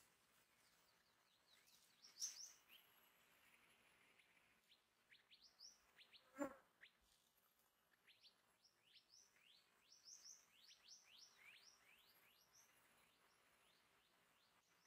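Minivets giving many short, thin, high chirps in quick series, faint overall, with one sharper, louder sound about six seconds in. A faint steady high insect whine runs underneath.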